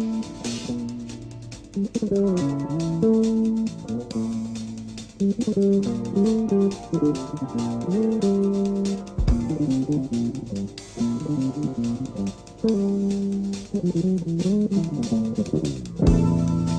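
A rock band plays live: an electric guitar plays a winding single-note melody over bass and drums, with brief breaks in the line.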